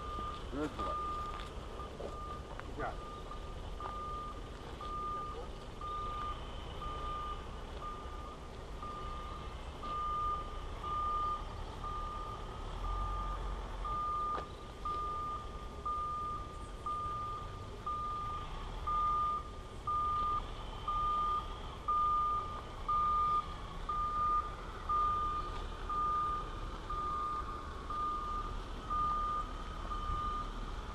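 An electronic beeper repeating one steady high beep at an even rate of about one and a half beeps a second, like a vehicle's reversing alarm.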